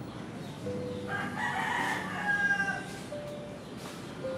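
A single long, pitched animal call starting about a second in and lasting under two seconds.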